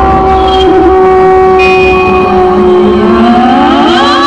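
Live band music played loud through a stacked loudspeaker rig: long held horn-like notes over a heavy bass, with a note sliding upward in the second half.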